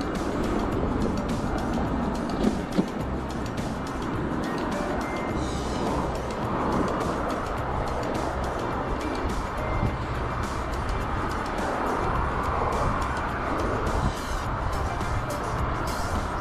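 Wind rumbling on a handlebar camera's microphone while cycling, with road traffic alongside and music playing. Two brief knocks come about two and a half seconds in.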